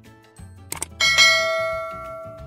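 Two quick clicks, then a bell ding about a second in that rings on and fades away: the stock subscribe-button and notification-bell sound effect, over background music.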